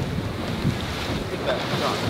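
Wind buffeting the microphone over the wash of choppy sea around a small boat.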